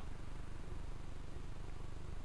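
Steady low rumble of a pickup truck's engine idling, heard from inside the cab.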